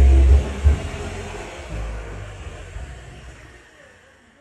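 Low rumbling and a few knocks from a phone being handled, fading away.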